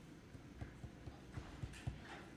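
Faint footsteps: a handful of soft low thumps on the floor, strongest near the end, as a person walks up to a podium.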